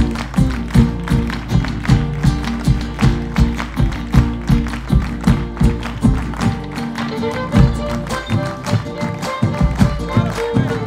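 Live Argentine folk music from a small band with violin, acoustic guitars and a bass drum, driven by a strong, even beat with hand-clapping.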